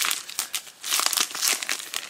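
Clear plastic package of foam pop dots crinkling as hands grip and shift it, a run of uneven crackles.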